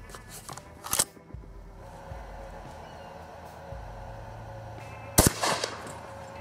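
A couple of sharp clicks in the first second, then a single 12-gauge Benelli Nova pump shotgun shot firing a solid brass slug about five seconds in, with a short echo after it.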